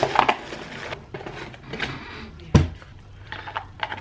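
A cardboard shipping box being pulled open and handled, with irregular scraping and rustling of the cardboard and a sharp knock about two and a half seconds in.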